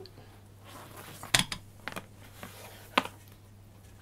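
Hands working braided Amsteel (Dyneema) rope, feeding the line through itself: faint rustling with three sharp clicks, one at about a second and a half, one just before two seconds and one at three seconds, over a low steady hum.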